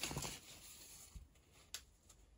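Quiet handling of a large printed cross-stitch canvas as it is turned: faint rustling, a soft knock about a second in and a sharp click near the end.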